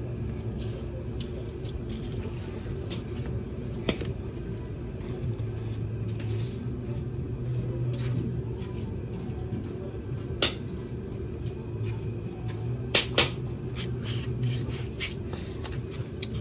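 A steady low hum, with a few scattered light clicks and knocks.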